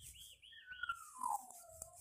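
A bird calling faintly: four quick high chirps, then one long whistle falling steadily in pitch.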